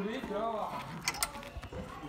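A key being worked into a small padlock on a locker, with a quick cluster of sharp metallic clicks about a second in.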